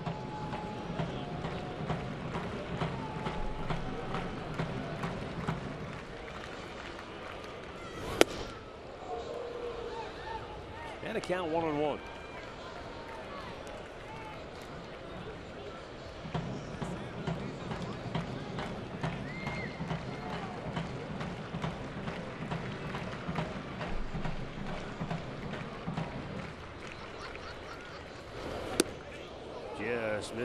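Ballpark crowd murmur, with one voice shouting above it a few seconds after the first pitch. Two sharp pops as pitches reach the plate, one about eight seconds in (the loudest sound) and one near the end as a slow pitch smacks into the catcher's mitt.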